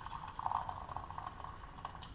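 Water pouring from an electric kettle into a ceramic mug: a steady splashing fill that gets louder about half a second in and stops near the end.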